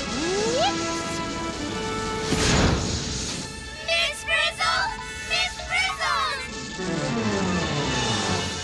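Cartoon soundtrack: background music with sound effects. A quick rising glide comes near the start and a short whooshing crash about two and a half seconds in. Then a few seconds of high-pitched warbling chatter, and a falling glide near the end.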